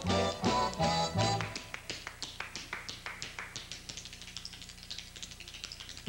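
Tap dancer's shoes striking the floor in a fast solo run of taps, after the dance band plays a short phrase for about the first second and a half.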